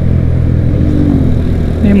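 Motorcycle engine running steadily at cruising speed on the move, heard from the rider's own bike as a constant low drone.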